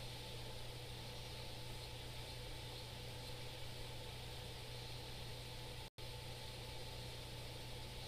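Faint, steady room noise: a low electrical hum under an even hiss, with a few faint steady tones. About six seconds in, the sound cuts out completely for a split second, a dropout in the recording.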